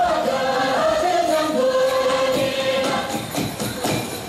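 Dance music with a choir singing long, held notes that step from one pitch to the next, with a few percussive beats near the end.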